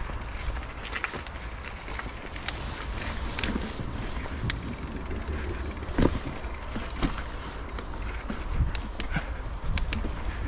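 Mountain bike rolling over a dirt trail: steady tyre and wind rumble on the camera, broken by scattered sharp clicks and rattles from the bike.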